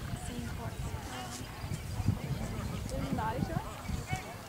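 Hoofbeats of a horse galloping on turf, a run of irregular dull thuds, with faint voices talking in the background.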